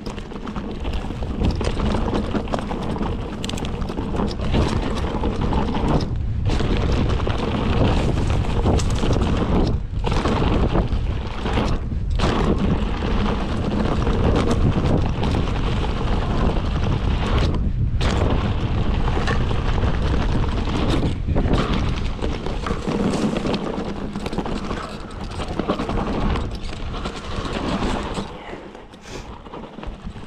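Mountain bike descending a rough dirt trail: wind buffeting the rider's camera microphone over the rumble of tyres on dirt and rocks. The noise drops out briefly several times and eases near the end.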